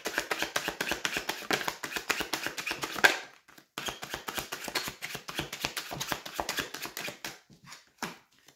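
A deck of tarot cards being shuffled by hand, a fast run of cards flicking and slapping against each other. There is a short break a little past three seconds, then the shuffling resumes until near the end.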